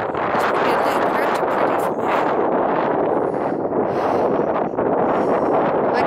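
Strong wind buffeting the microphone, a steady, loud rushing roar.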